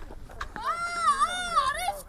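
A single long, high-pitched call, held for over a second with its pitch wavering, starting about half a second in.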